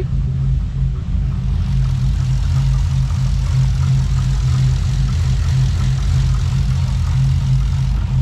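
Holden Commodore VE SS ute's LS V8 idling through race-pipe exhaust with a loping idle from its new 'phantom cam' tune, still warming up. It is a steady, loud, deep rumble with an uneven pulse underneath.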